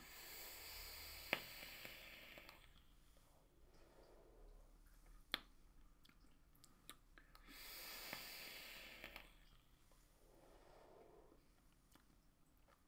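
Faint hiss of air drawn through a rebuildable vape atomizer, twice, about two seconds each: once at the start and again past the middle, with a couple of soft clicks between.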